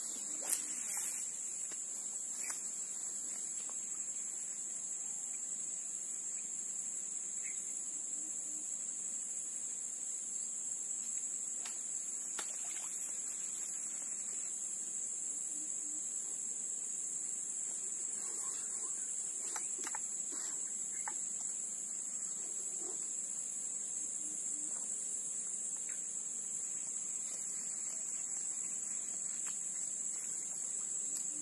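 Insects in the swamp forest giving a continuous, high-pitched buzzing drone that holds steady throughout, with a few faint clicks and knocks.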